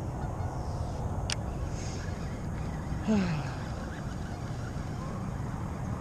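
Steady low outdoor noise with a brief tick about a second in, and one short call that falls in pitch, like a honk, about three seconds in.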